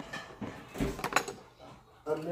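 Kitchen utensils (plastic measuring cups and a metal whisk) clattering as a hand rummages through them, with a quick run of sharp clicks and knocks about a second in.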